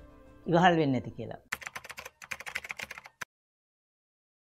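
A brief phrase from a man's voice, then a rapid run of computer-keyboard typing clicks lasting under two seconds that stops abruptly: a typing sound effect for text appearing on screen.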